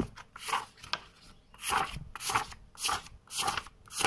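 A4-size-half (A5) paper sheets peeled one at a time off a hand-held stack with a tape-wrapped fingertip and dealt out into piles, a short papery swish about twice a second.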